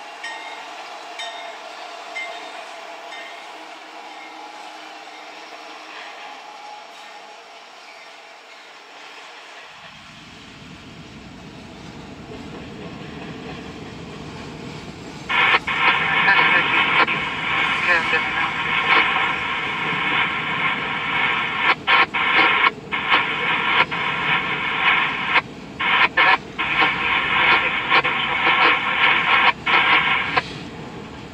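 Diesel freight locomotive approaching, a low rumble building about a third of the way in. About halfway through its air horn starts blowing loudly and keeps sounding in a series of blasts with short breaks as the locomotive passes.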